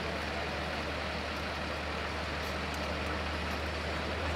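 Fire engine's motor running steadily, heard as a low constant drone, under a broad steady rushing noise from the blaze and the water jets.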